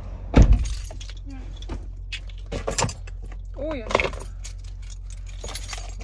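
A car door shutting with a heavy thud about half a second in, followed by small clicks and jingles of keys on a lanyard being handled inside the car.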